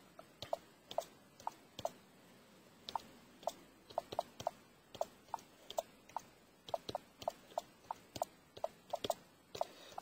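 One-finger keystrokes on a Microsoft Surface RT's detachable keyboard cover: a string of short clicking taps at an uneven pace, about two or three a second, sparse at first and steadier later, each key pressed slowly and deliberately.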